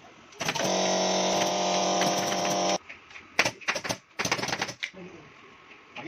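A steady machine hum for a little over two seconds that starts and cuts off abruptly, followed by a quick run of sharp clicks.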